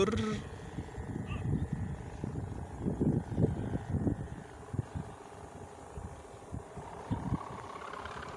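Gusty wind buffeting the microphone in irregular low rumbles, strong enough that the wind is called "ngeri" (fierce).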